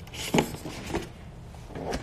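A cardboard gift box being handled close to the microphone: a sharp tap about a third of a second in, a softer knock about a second in, and light rubbing of the box near the end.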